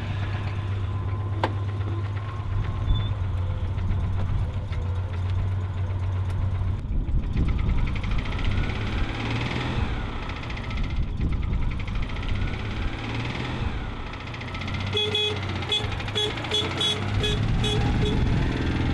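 A Citroën 2CV's air-cooled flat-twin engine running with a steady low hum, rising and falling in pitch midway. In the last few seconds comes a quick run of short horn toots, about three a second.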